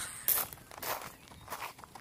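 Footsteps crunching on gravel, several steps at an uneven walking pace.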